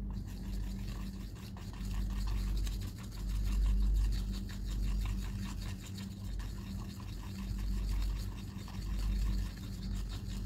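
A thin brush stirring thick paint round a plastic palette well, a continuous wet scratchy scraping made of many rapid small strokes, over a steady low hum.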